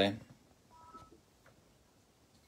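A man's voice trails off, then near silence in a small room, broken about a second in by a faint, short electronic beep of two steady tones sounding together.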